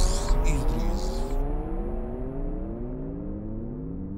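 Electronic outro effect closing the track: several tones sliding slowly downward in pitch over a hiss that cuts off suddenly about a second and a half in, the whole sound dying away steadily.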